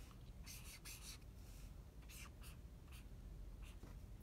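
Faint scratching of a pen tip drawing lettering strokes on smooth Bristol paper, as several short separate strokes with brief pauses between them.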